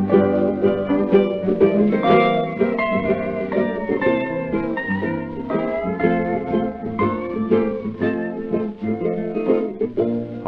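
Instrumental break of a 1936 Hawaiian-style country record: a steel guitar plays a melody of gliding notes over acoustic guitar accompaniment, with the narrow, dull high end of an old 78 rpm disc.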